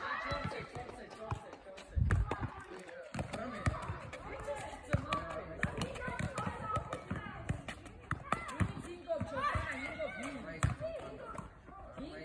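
Children's voices calling and shouting over one another on an outdoor court, with scattered thuds of a ball being hit and bounced. A loud low thump comes about two seconds in.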